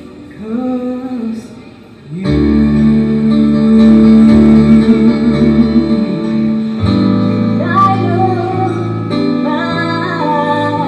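A woman singing a slow ballad with a small live jazz band of upright bass and keyboard. After a soft sung phrase, the band comes in fuller and louder about two seconds in, and her voice rises over it near the end.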